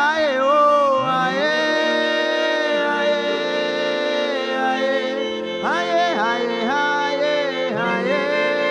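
A man singing wordlessly in worship over sustained instrumental chords. He holds one long note for several seconds, with slides at its start, then sings a shorter, wavering phrase near the end.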